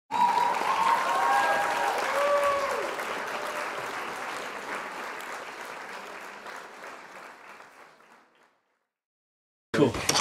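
Crowd applauding, with a few cheers in the first three seconds, fading out steadily to silence about eight and a half seconds in.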